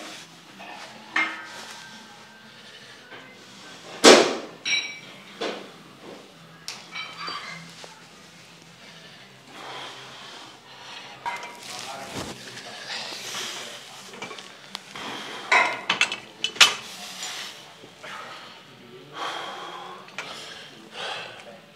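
Scattered metallic clanks and clinks of gym equipment, the loudest a sharp clank about four seconds in and a quick run of knocks near the end, with low voices in between.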